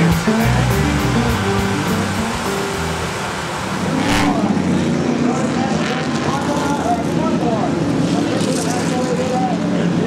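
Guitar-led music that cuts off about four seconds in, giving way to SK Modified race cars running at speed, their engines rising and falling in pitch.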